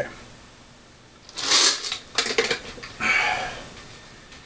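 A metal candy tin with popcorn inside being handled: two short bursts of rustling and scraping, with a quick run of light clicks between them.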